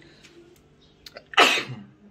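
A man sneezes once, loudly, about a second and a half in.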